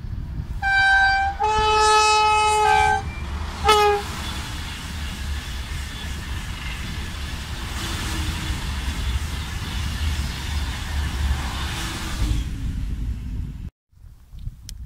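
TGV high-speed train sounding its horn in three blasts: a short one, a longer one that drops in pitch near its end, and a short one. The steady rushing noise of the double-unit train passing at speed on the high-speed line follows and cuts off suddenly just before the end.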